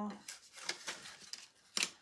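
Flat transfer tool scraping and rubbing over a paper-backed decor transfer on a wooden board, burnishing it down, with a few light clicks and a sharper tap near the end.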